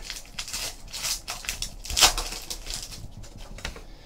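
Foil trading-card pack wrapper crinkling and rustling in the hands as the pack is opened and the cards are slid out, with a louder crackle about two seconds in.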